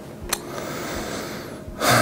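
A steady hiss of room noise with a small click about a third of a second in, then a man's quick, audible intake of breath near the end.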